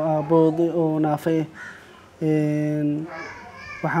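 Speech only: a man talking in Somali, with a short pause and then one vowel held steady for most of a second about two seconds in.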